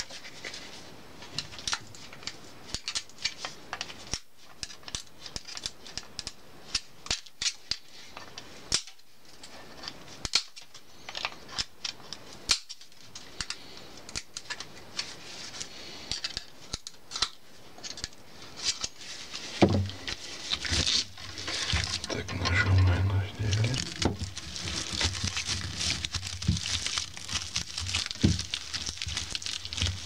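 Stiff polypropylene broom bristles crackling and rustling as thin copper wire is threaded and pulled through them by hand, with scattered sharp clicks and scratches. The handling sounds grow denser and fuller in the last third.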